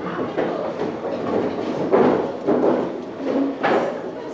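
Indistinct chatter of several people talking at once in a classroom, with a few sharp knocks or bumps, one about two seconds in and a louder one near the end.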